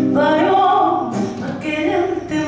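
A woman singing a tango through a microphone, accompanied by a classical guitar. One sung phrase swells and holds for about a second, then the voice drops away briefly before the next phrase begins near the end.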